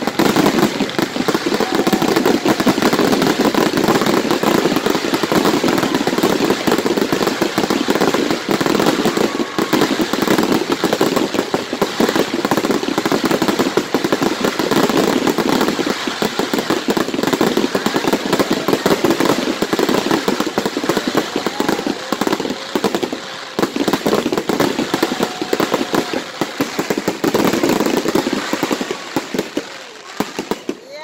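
Fireworks going off in a rapid, unbroken barrage of bangs and crackling, with a few faint whistles, thinning out just before the end.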